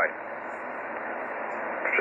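Steady hiss of band noise from an amateur radio transceiver's speaker, receiving upper sideband on the 15-metre (21 MHz) band with no station transmitting. Everything above the narrow voice range is cut off. A voice breaks in near the end.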